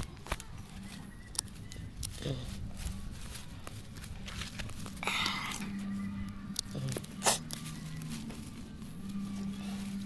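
Hand pruning shears cutting stems and roots at the base of a shrub: a string of sharp snips and clicks, with a longer rasping tear about five seconds in as a root or stem gives way.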